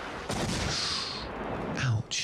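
A large explosion: a long rushing blast that rolls on loudly, with a second burst about a third of a second in.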